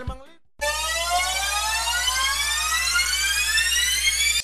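Music fades out, and about half a second in a synthesized rising sweep sound effect starts: a buzzy, many-toned sound climbing steadily in pitch over a steady low drone.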